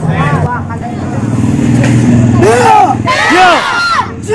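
Raised voices, loudest for about a second just past the middle, over a steady low engine hum.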